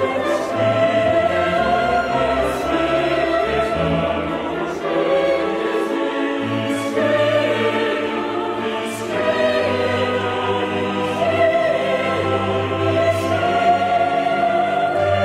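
Choir and symphony orchestra performing a Romantic-era oratorio, with sustained sung chords over the orchestra and a brief lull in the bass about six seconds in.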